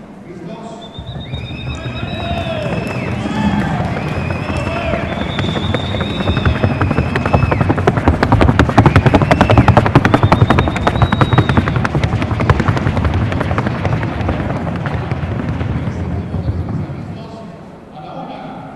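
Colombian Paso Fino horse in the fino gait on a wooden sounding board: very fast, even hoofbeats that build up, are loudest midway and fade near the end, with wavering high calls over the first few seconds.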